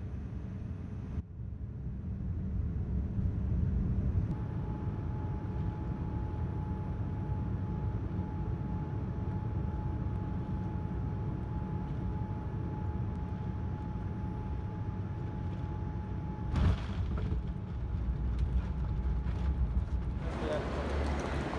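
Jet airliner cabin noise: a steady low rumble from the engines and airflow, with a faint thin whine through the middle. About three-quarters of the way in comes a sudden thump, then a louder, deeper rumble: the touchdown and the roll along the runway.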